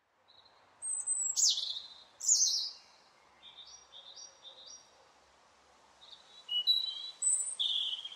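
A bird calling: two high whistles that fall in pitch, a run of short chirps in the middle, and another burst of calls near the end.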